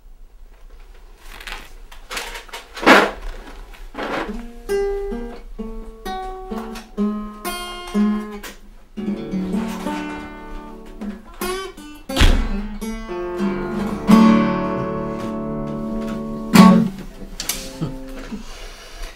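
Acoustic guitar playing: a few strummed chords, then a run of single picked notes, then fuller strummed chords with several hard strokes near the end.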